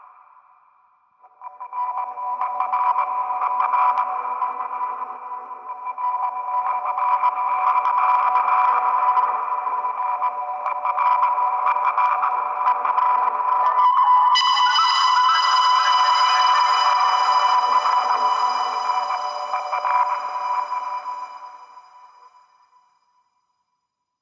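Ambient electronic music: sustained synthesizer tones with a shimmering, wavering texture start after a brief near-silence. About two-thirds of the way in, a brighter layer of high tones joins, and then it all fades out shortly before the end.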